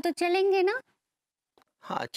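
A woman's drawn-out voiced sigh or 'hmm', held on one slightly rising note for under a second. A silent gap follows, and speech starts right at the end.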